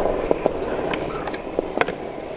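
Kick scooter wheels rolling over concrete, a steady rumble that eases off toward the end, with a few sharp clicks along the way.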